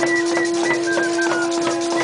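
A conch shell trumpet blown in one long steady note, with a tambourine jingling and hand drums beating along.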